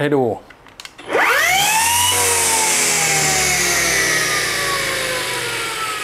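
Brushless motor of an OSUKA OCGT407 cordless grass trimmer switched on about a second in, spinning a toothed steel saw blade with no load: a whine that rises quickly as it spins up, then holds and drifts slowly lower, over a rushing hiss.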